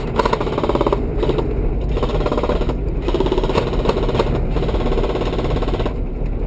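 Airsoft automatic gun firing on full auto in several long bursts of rapid, even clicks, over the steady rumble of the LMTV's diesel engine.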